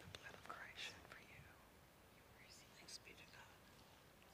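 Near silence with faint, hushed speech: quiet whispered words, with soft hissing 's' sounds about a second in and again near three seconds.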